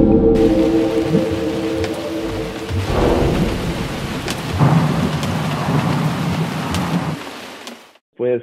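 Rain-and-thunder sound effect: steady rain with scattered drips, with low thunder rolls swelling about three and about four and a half seconds in. A held musical chord under it stops about three seconds in, and the whole fades out near the end.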